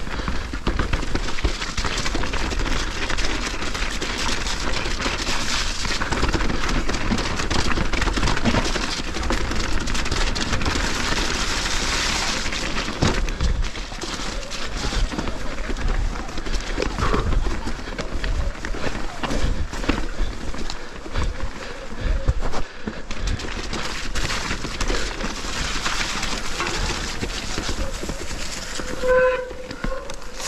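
Electric mountain bike ridden down rough, rocky singletrack, heard from a bike-mounted action camera: continuous wind rush on the microphone with the rattle and knocks of tyres, chain and suspension over rocks and roots. A short pitched tone sounds near the end as the bike slows.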